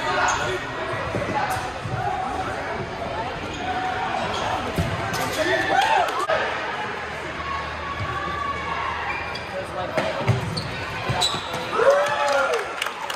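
Futsal game play on a hardwood gym floor: sharp knocks of the ball being kicked and bouncing, with players calling out, all echoing in a large hall.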